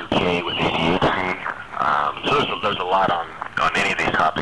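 Speech only: a voice talking continuously, with a thin sound lacking the highest frequencies.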